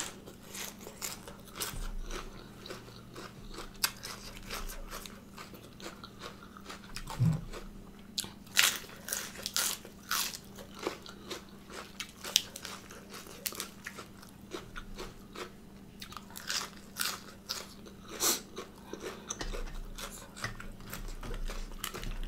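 A person chewing a mouthful of fresh lettuce leaf and steamed apple snail meat close to the microphone, with irregular crisp crunches throughout, coming thickest in a few clusters.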